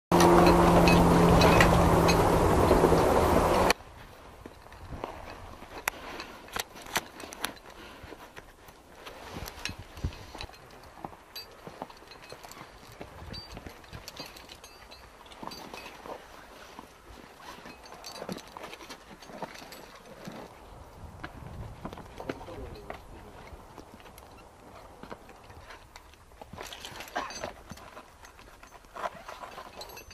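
A loud opening sound with steady held tones cuts off abruptly a few seconds in. After it come scattered clicks, knocks and scrapes of soldiers climbing a rock face, boots and kit striking and rubbing against the rock.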